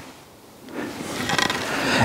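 Scraping and rustling handling noise as a camera is repositioned on its mount. It starts with a few faint clicks, and from under a second in it swells into a steadily louder scrape.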